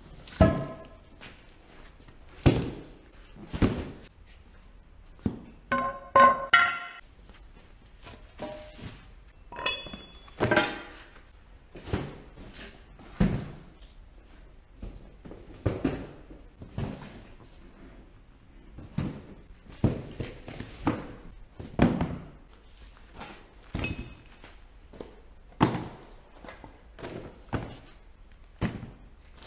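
Cardboard boxes of machine parts being set down and dropped onto a concrete shop floor: a long run of irregular thunks and knocks, one every second or two. A couple of clanks with a ringing tone come around six and ten seconds in.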